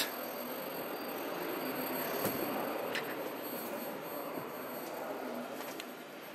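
Steady background noise of a busy exhibition hall, with a few faint clicks.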